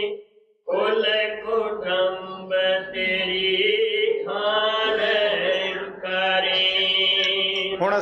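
A single voice chanting a devotional hymn in long, drawn-out held notes, breaking off briefly just after the start and again for a moment midway.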